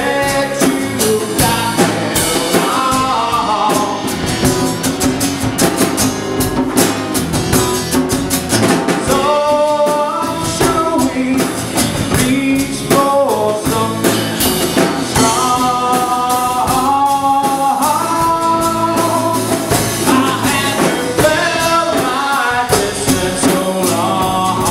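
Live song: a man singing into a microphone while strumming an acoustic guitar, backed by a drum kit. The vocal comes in phrases with short breaks between them.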